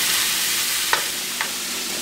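Shrimp, broccoli and bell pepper sizzling in oil in a skillet as they are stirred, with two light clicks about a second in.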